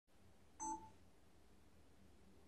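Near silence, broken by one short electronic beep about half a second in.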